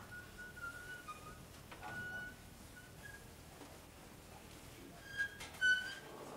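Faint whistling microphone feedback: several short, steady high tones that come and go, with two brief handling knocks near the end.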